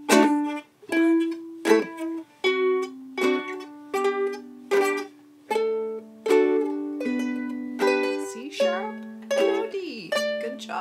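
Several ukuleles playing a D major scale together in single plucked notes, each note plucked twice, at a steady pulse of about one pluck every three-quarters of a second, each note ringing briefly.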